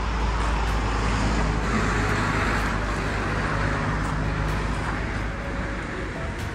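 Road traffic noise, a steady rumble that swells about two seconds in as a vehicle goes by.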